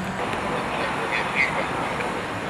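Quadcopter drone's rotors running as it takes off, a steady noise.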